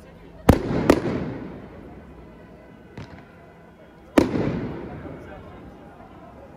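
Aerial firework shells bursting overhead: two sharp bangs close together about half a second in, a fainter one around the middle, and another loud bang about four seconds in, each followed by a rolling echo that dies away over a second or more.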